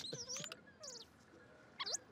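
Small fluffy film creatures giving a few high, squeaky chirps that slide up and down in pitch. There are calls at the start, a pause, and a quick rising squeak near the end.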